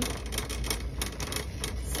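Shopping cart rolling across a store floor, its wheels and wire basket rattling in a fast, irregular clatter over a low rumble.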